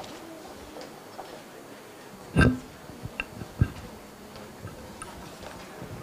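A few knocks and thumps over quiet room noise. The loudest comes about two and a half seconds in, with another sharp knock about a second later.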